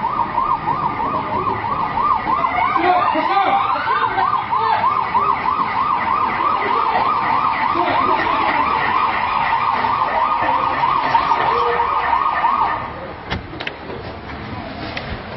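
Emergency vehicle siren sounding a fast warble, its pitch rising and falling rapidly and evenly, with a second rising siren tone heard briefly a few seconds in. The siren cuts off abruptly shortly before the end.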